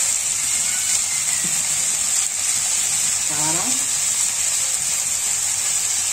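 Sliced onions and tomatoes frying in oil in a kadai over a gas flame: a steady, even sizzle, with water being poured into the hot pan at the start.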